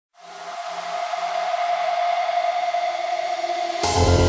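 Electronic dance track's atmospheric intro fading in: a steady high sustained tone over a hissy haze, with a low note pulsing about twice a second for the first couple of seconds. Just before the end the full track comes in with heavy bass.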